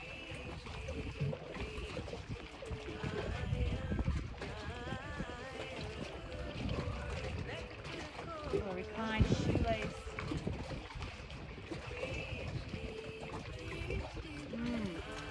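Wind rumbling on the microphone at the open waterside, with faint pitched sounds in the background and one louder sudden sound about nine seconds in.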